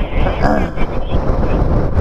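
Wind buffeting the microphone of a camera on a moving e-bike: a loud, steady rumble, with a brief snatch of voice about half a second in.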